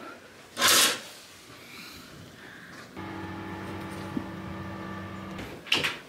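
Hotel-room curtain drawn back along its rail: one short swish about half a second in. A steady low hum comes in around the middle and stops shortly before the end.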